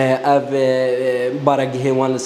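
A man's voice holding one long, level drawn-out vowel for about a second, like a stretched hesitation sound, then going back into ordinary speech.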